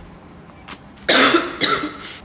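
A sick young woman coughing twice about a second in, two short harsh coughs, the first the louder: the cough of an illness that has lingered for a long time.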